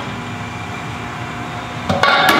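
A steady mechanical hum over a low background noise, with a short light knock near the end.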